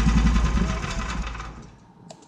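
Small petrol engine of a large-scale RC truck model idling, then slowing and dying away as it is shut off from the radio control. The rapid firing pulses space out and fade over the last second.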